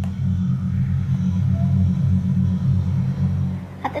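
A steady low rumble with a faint hiss above it, unchanging until speech resumes at the very end.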